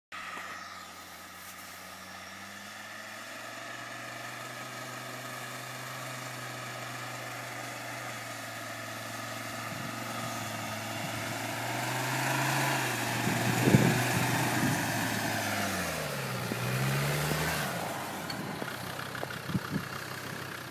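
Land Rover Defender engine pulling the 4x4 through deep snow at low speed, getting louder as it comes closer, with a brief sharp knock at its loudest about two-thirds of the way through. Shortly after, the engine speed drops and climbs back up.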